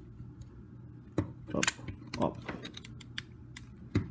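Hard plastic parts of an action-figure combiner clicking and knocking as they are handled and pushed together: a scatter of short sharp clicks, the loudest about a second in.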